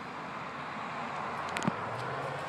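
Steady outdoor background noise, a hiss-like wind rush on the microphone, with a couple of faint clicks about a second and a half in.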